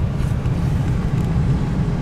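Motorhome engine and road noise inside the cab while driving: a steady low rumble.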